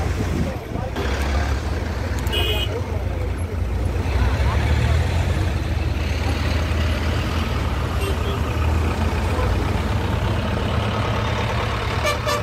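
Road traffic in a jam: truck and car engines rumbling steadily as vehicles idle and creep past close by. A short high horn beep sounds about two and a half seconds in.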